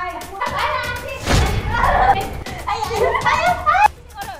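Several women shouting, squealing and laughing excitedly, with a thump a little over a second in and rising squeals near the end.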